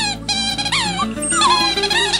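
A shih tzu howling along to a song, its voice sliding down and up in pitch in several drawn-out notes over the music.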